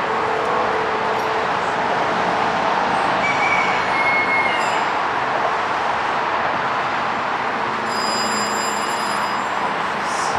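Steady rushing background noise with no clear source, with a faint thin whistle about three seconds in.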